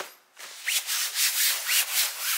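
Hand rubbing and pressing a fabric backpack cover down onto its Velcro hook-and-loop strips: a run of quick, scratchy strokes starting about half a second in.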